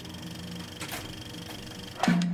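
Film projector running: a fast, even mechanical clatter of the film transport, with a louder click or two about a second in.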